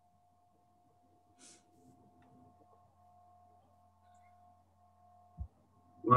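Near silence: faint room tone over a video call, with a steady faint hum and one short, soft thump near the end.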